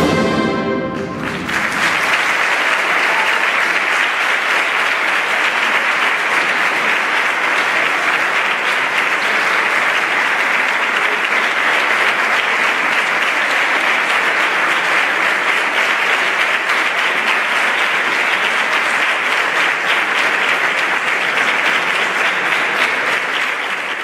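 A wind band's final chord dies away in the first second, then an audience applauds steadily until the sound fades out at the very end.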